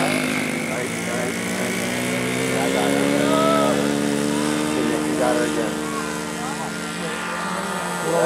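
Radio-controlled model airplane's motor running at high throttle, its pitch rising as the plane takes off from the grass and climbs out, then easing slightly.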